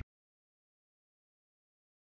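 Silence: the sound track is completely blank.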